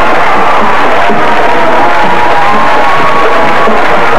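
A band playing long, wavering notes over a cheering football crowd.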